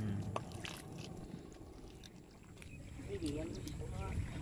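A brief voice about three seconds in, over steady low background noise with a few light clicks.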